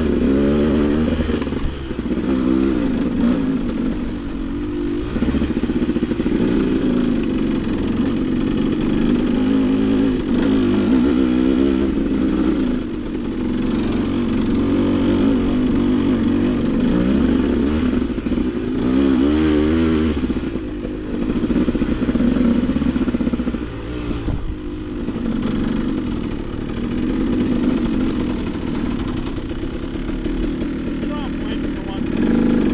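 Dirt bike engine under way on a trail, its pitch rising and falling over and over as the throttle is opened and closed.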